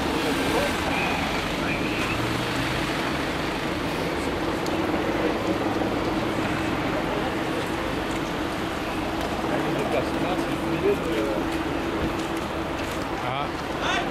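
City street traffic on wet pavement, with a steady engine hum running throughout and scattered indistinct voices.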